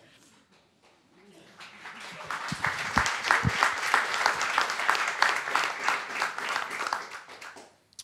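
An audience applauding. The clapping builds up after about a second, holds full for several seconds and dies away just before the end. A couple of low thumps come about three seconds in.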